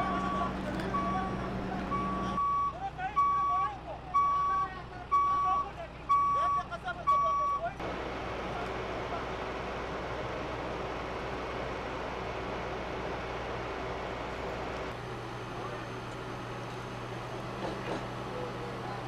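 A heavy vehicle's reversing alarm beeping steadily about once a second for the first eight seconds, with faint voices. After that a heavy vehicle engine runs steadily.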